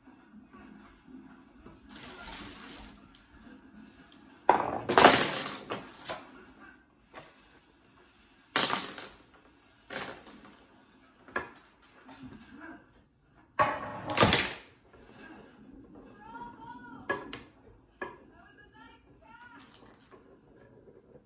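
Small toy bowling pins being set up by hand on a miniature lane: a series of sharp clacks and clatters as pins are put down and knock against each other. The loudest clatters come about five seconds in and again near the middle.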